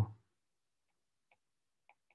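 A spoken word trails off, then near silence with two faint, short ticks about a second and a quarter and two seconds in: a stylus tapping on a tablet screen while writing.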